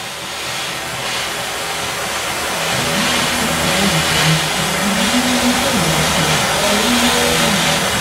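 Gas torch burning with a steady hiss as its flame heats a tinned patch on a steel fender for lead filling. From about three seconds in, a low tune of held notes stepping up and down runs underneath.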